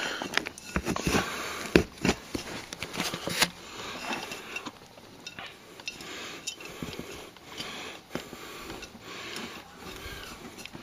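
Hands scraping and pushing damp, soil-like substrate around a terracotta plant pot, a crunching, rustling sound with several sharper scrapes and clicks in the first few seconds, then quieter rustling.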